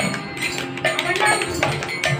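Devotional group singing with steady rhythmic hand percussion and jingles, the music of a home satsang.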